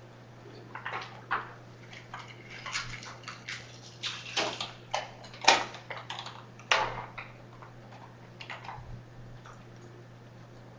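Scattered, irregular clicks and short scuffing noises, busiest in the middle few seconds and thinning out near the end, over a steady low hum.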